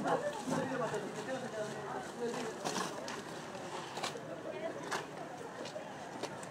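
Background voices of several people talking at a distance, with a few sharp clicks or knocks about three, four and five seconds in.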